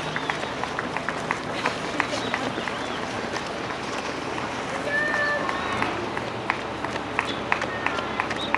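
Footfalls of many runners' shoes on an asphalt road, a stream of short, irregular slaps several a second, with people's voices among them.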